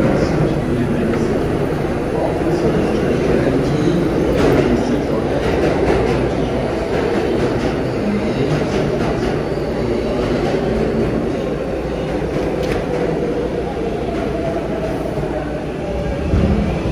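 Steady din of a busy subway platform beside an R188 subway train standing with its doors open: the train's continuous equipment noise mixed with crowd footsteps and chatter.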